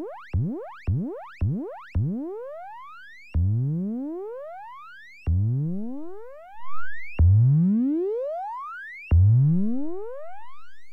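Serge modular synthesizer playing a sine wave waveshaped by the Extended ADSR as a bright tone that sweeps up several octaves again and again, each sweep loud at its start and then fading. The sweeps come about twice a second at first, then about two seconds in slow to roughly one every two seconds.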